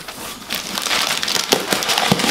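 Tissue and packing paper rustling and crinkling as hands dig through a cardboard box, along with a sheet of letter paper being unfolded, with a couple of sharper crackles about one and a half seconds in.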